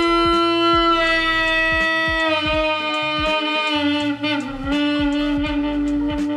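Saxophone neck and mouthpiece blown on their own, with no horn attached, giving one sustained, reedy tone. The pitch is bent down with the embouchure in small steps from F# toward Eb, an embouchure-flexibility warm-up.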